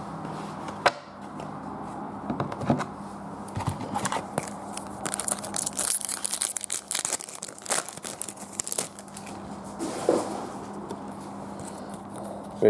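A trading card pack's wrapper being torn open and crinkled by hand. A few sharp handling clicks come first, then a dense stretch of crackling and tearing from about four to nine seconds in.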